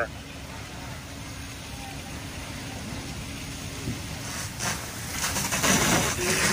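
Steady low hum of idling engines under an even rushing noise. About four and a half seconds in, the rushing grows louder and stays up.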